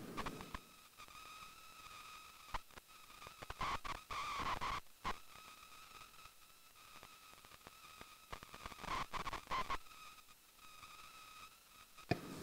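Faint scattered clicks of a computer keyboard and mouse over a quiet, steady high-pitched electrical whine.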